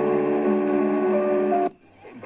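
Instrumental music from an AM station playing through a portable radio's speaker, slow held notes that step between pitches. It cuts off abruptly near the end as the radio is tuned up to the next frequency.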